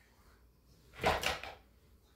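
A short burst of rustling noise about a second in, lasting about half a second with two swells.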